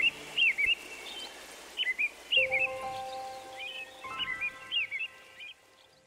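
Birds chirping in short clusters of quick rising-and-falling chirps over faint background noise. A soft held chord comes in about two and a half seconds in, and everything fades out shortly before the end.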